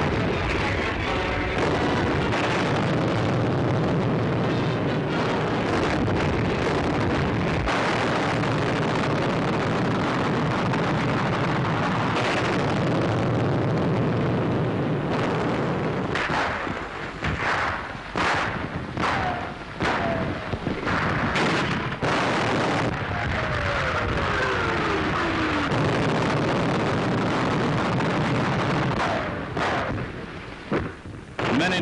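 Tank gun and artillery fire: a dense, continuous run of booms and rumbling, then a string of separate sharp shots about halfway through, and a falling whistling tone a few seconds later.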